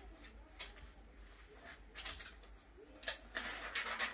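A quiet workroom with a faint steady hum while a pneumatic heat press holds closed on a garment. There are a few faint clicks and taps, and a sharper pair of clicks about three seconds in.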